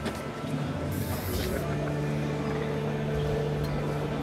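Steady hum and murmur of a busy backstage hall, with a short hiss about a second in.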